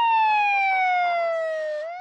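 Police car siren wailing: one long tone falling slowly in pitch, turning to rise again near the end.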